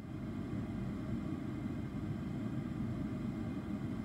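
Steady low background rumble with a faint hiss, unchanging and without any distinct knock or click.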